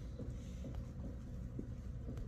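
Low, steady classroom hum with a few faint ticks of a dry-erase marker on a whiteboard.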